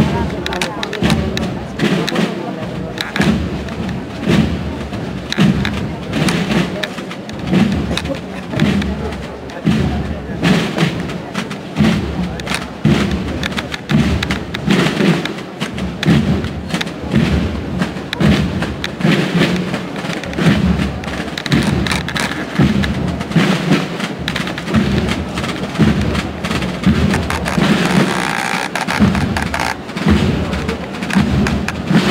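Procession drums beating a slow, steady march, about one low beat a second, with sharper strikes between the beats and crowd voices underneath.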